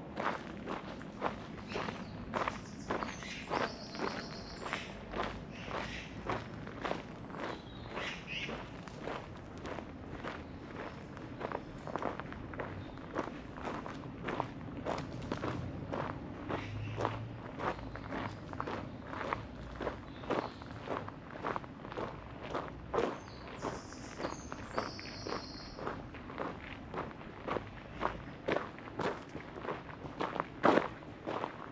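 Footsteps of a person walking at a steady pace, about two steps a second.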